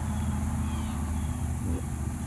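A steady low rumble, with a constant high insect trill behind it and a few faint little bird chirps.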